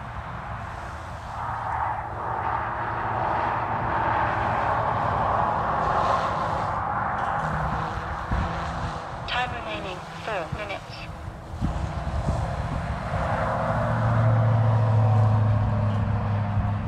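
OMPHOBBY M2 V2 micro electric RC helicopter flying in idle-up mode, its rotors and tail motor running with a steady buzz that swells and fades and shifts in pitch as it manoeuvres. Its tail motor runs in reverse after a modification meant to quieten it.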